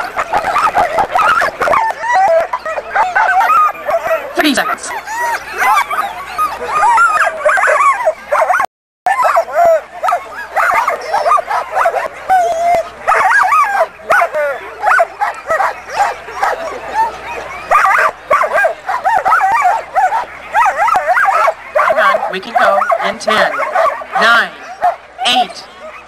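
A harnessed sled dog team barking, yipping and whining together in a dense, continuous chorus, the sign of dogs eager to run while they are held back at the start line. The sound drops out for a moment about nine seconds in.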